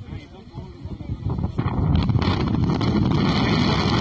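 Wind buffeting the microphone: faint voices at first, then about a second and a half in the noise jumps up loud and stays steady.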